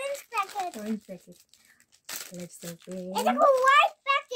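A crinkly foil wrapper rustling and tearing as small hands pull it open, with a short sharp burst of crinkling about two seconds in. Voices are heard at the start and again near the end.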